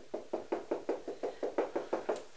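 Felt-tip marker dabbed rapidly against a whiteboard, a quick even run of short taps about seven a second as dots are drawn.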